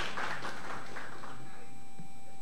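Brief scattered applause from a small audience, thinning out and stopping about a second and a half in.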